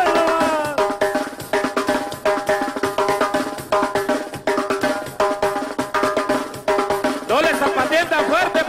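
Live duranguense band playing an instrumental passage: an electronic keyboard riff of short, rapidly repeated notes over a steady drum beat. A voice comes back in near the end.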